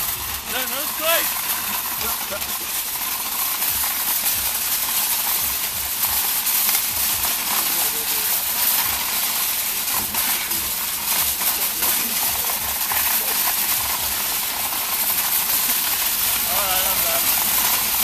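Shopping cart being towed fast over a gravel road: a steady rushing noise full of constant rattling from the cart's wheels and wire basket shaking on the rough surface.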